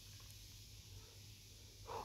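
Very faint, steady sizzle of samosas deep-frying in oil in a steel kadai over a low gas flame, with a low hum underneath.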